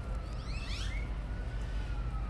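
A faint, distant siren holds one long, slowly falling tone over a steady low hum, with a few short chirps about half a second to a second in.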